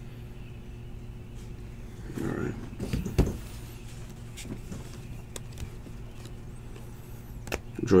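Stiff chrome-finish trading cards handled by hand: a few sharp clicks and slides of card stock as they are flipped through, over a steady low hum.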